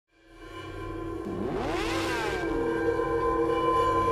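Logo-intro sound design: a sustained synthetic drone that fades in from silence, with pitch sweeps that rise and fall and a whoosh about two seconds in.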